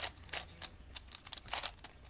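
Plastic layers of a V-Cube 7x7x7 puzzle being turned by hand: several short clicks and clacks, with a quick cluster about one and a half seconds in.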